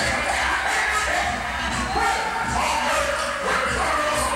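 Dancehall riddim playing loud through a sound system with a steady pulsing bass, while a deejay chants into a microphone over it.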